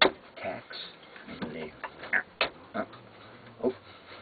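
Several sharp clicks and knocks of a hand tool working old tacks out of a wooden screen-door frame, the loudest right at the start, with short vocal sounds between them.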